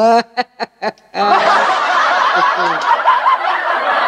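A woman's short chuckling laugh, then about a second in a loud, dense sound of many overlapping voices sets in and holds, like a crowd.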